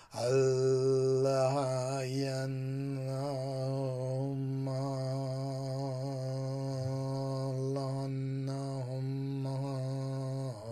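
A man chanting one long, low note, holding the pitch steady while the vowel shape slowly shifts.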